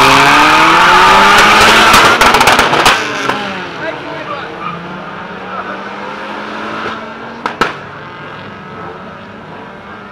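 Two drag-racing street cars launching from the start line, engines revving hard with pitch climbing and dropping back at each gear change, then fading as they pull away down the strip. A single sharp pop comes about seven and a half seconds in.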